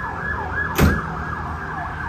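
A siren sounding in fast rising-and-falling sweeps, about four a second. A single sharp knock comes a little under a second in.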